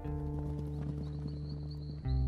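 Soft score of the animated film: sustained low notes held under a dense, irregular patter of small clicks, with a faint high wavering trill entering about a second in.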